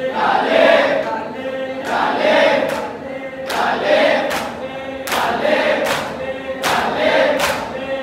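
A large group of men chanting a noha in unison, the line swelling about every one and a half seconds, with sharp slaps of hands on bare chests (matam) falling in with the chant.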